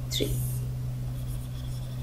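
Faint scratching of a stylus writing and underlining on a pen tablet, over a steady low electrical hum.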